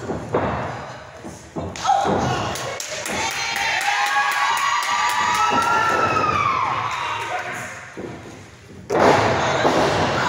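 Wrestlers' bodies thudding onto the ring canvas, a sudden impact about two seconds in and a louder one near the end, with yelling and shouting voices in between.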